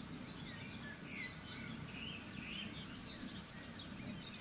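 Crickets trilling in one steady high-pitched drone, with short bird chirps over it, against a low outdoor rumble.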